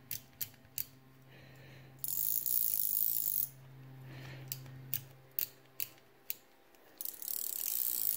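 Zebco 733 Hawg spincast reel's drag buzzing as line is pulled off against it in two long pulls, with single sharp clicks between them. The drag, rebuilt with new fiber drag washers, is paying out smoothly.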